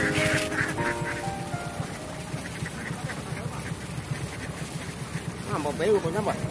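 Domestic ducks quacking over background music with a steady beat; the loudest quacks come near the end.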